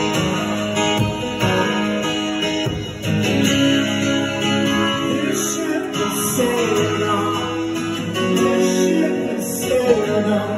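Live song: an acoustic guitar strummed steadily, with voices singing along and a few sliding notes in the second half.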